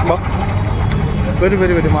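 Busy street noise: a steady low rumble of vehicle engines under crowd bustle, with a voice speaking over it in the last half second.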